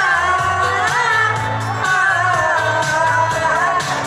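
Amplified dance-band music with a singer holding long, gliding notes over a steady bass beat, played from a stage.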